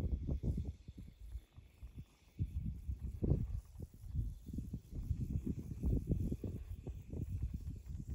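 Wind buffeting a phone microphone in uneven gusts, a low rumbling rush that drops away for a moment about a second in and then picks up again.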